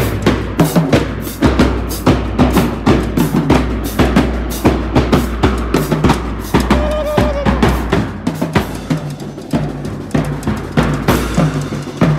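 School marching band drumline playing a fast cadence in a steady, dense rhythm of drum strikes, with marching bass drums hit with mallets.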